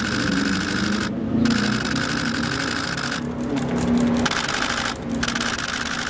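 Handling noise on the camera's microphone: a loud rubbing hiss that cuts in and out abruptly several times, over a steady low hum.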